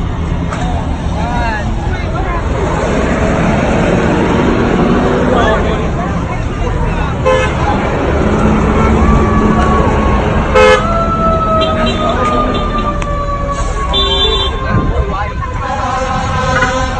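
Street traffic with car horns honking: short horn blasts, then one horn held for about five seconds, its pitch sagging slightly, in the second half, over traffic rumble and raised voices.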